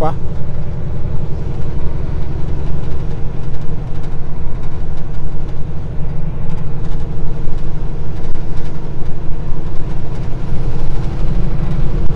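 Semi-truck's diesel engine running steadily, heard from inside the cab at low road speed, with a deep, even drone and road rumble.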